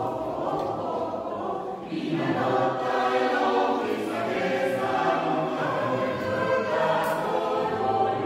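A choir singing in a church, sustained chords carried by many voices. About two seconds in there is a brief break, and then a fuller, brighter phrase begins.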